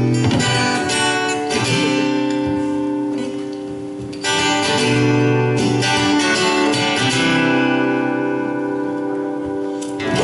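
Live band playing an instrumental intro with strummed acoustic guitar, electric guitar, bass and drums, holding sustained chords. A fresh chord is struck about four seconds in.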